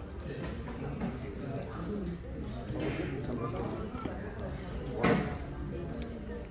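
Background chatter of diners in a restaurant, with no clear words, and one short, sharp clatter about five seconds in.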